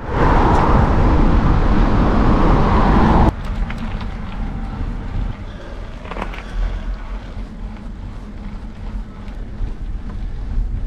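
Mountain-bike tyres rolling on asphalt with wind rushing over the bike-mounted camera's microphone. Loud for about three seconds, then dropping abruptly to a quieter, steady rush.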